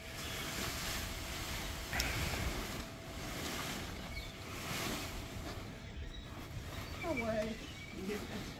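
Fabric cover rustling and dragging as it is pulled off a Honda quad, a steady rushing swish with a single sharp click about two seconds in.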